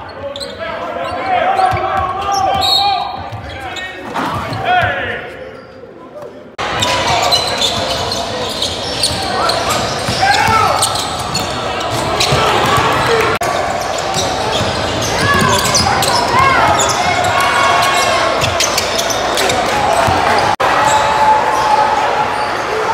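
Live gym sound of a basketball game: a ball bouncing on a hardwood court, with players and spectators calling out in a large, echoing hall. About six and a half seconds in, the sound cuts abruptly to a louder, busier crowd din.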